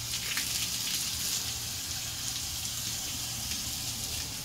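Garden hose spray nozzle spraying water onto a dog's wet coat: a steady hiss that comes on suddenly at the start.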